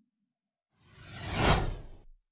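Whoosh transition sound effect: a rush of noise that swells up from silence just under a second in, peaks and sweeps downward with a low rumble beneath, then dies away at the end.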